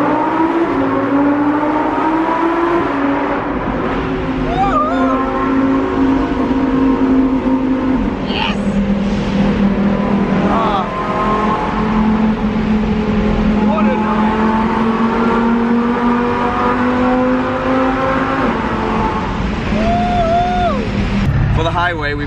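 Lamborghini's naturally aspirated V10 heard from inside the cabin under way, its note climbing as the car accelerates in the first few seconds, then holding a steady cruising drone. The pitch steps down about eight seconds in and again near the end. Brief whoops and laughs from the occupants sound over it a few times.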